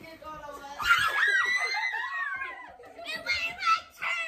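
A woman's high-pitched scream, starting about a second in and lasting about a second and a half, its pitch sliding up and down. It is followed by choppy laughter near the end.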